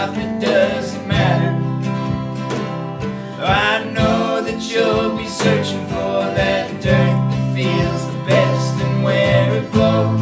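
Indie folk band playing live: strummed acoustic guitars, electric bass and cajon, with a gliding melody line over the chords.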